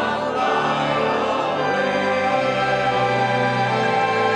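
Church choir singing a hymn, holding long sustained chords.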